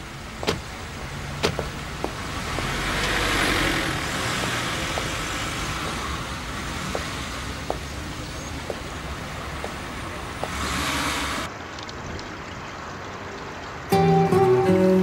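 Street sound of a car: engine and tyre noise that swells a few seconds in and again briefly later on, with scattered sharp clicks over a steady background hum.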